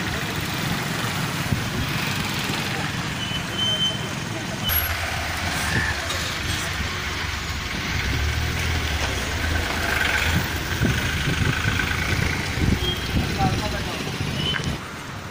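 Street traffic: engines of stopped and passing motorbikes, scooters and cars running, with people talking over them. The sound changes abruptly about a third of the way in.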